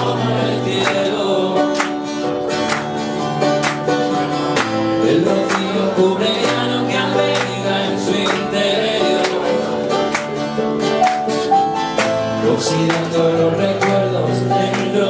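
Steel-string acoustic guitar strummed in a steady, even rhythm, with a man's voice singing over it in a live solo acoustic performance.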